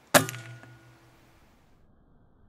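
A single air rifle shot: a sharp crack followed by a ringing metallic tone that fades over about a second.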